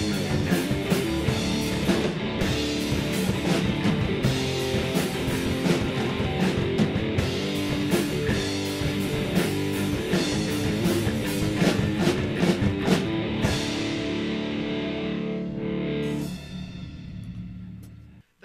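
Live rock band, with electric guitar, bass guitar and drum kit, playing a song to its end. The drums stop about thirteen seconds in, and the last chord rings on and fades out near the end.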